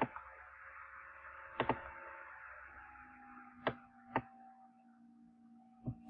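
Computer mouse clicks: one at the start, one under two seconds in, and a quick pair around four seconds, over a faint steady hum and hiss.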